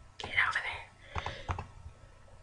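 A short breathy whisper close to the microphone, followed by two sharp computer mouse clicks just past a second in while a slider is being dragged.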